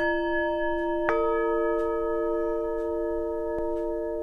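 Bell-like chime notes ringing out long: a new note is struck at the start and another about a second in, each ringing on and layering over the ones before.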